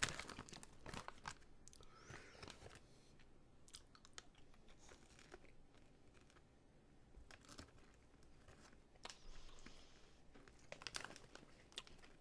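Faint crunching of caramel-coated popcorn being chewed close to the microphone, a scatter of small crackles that thins out in the middle and picks up again near the end.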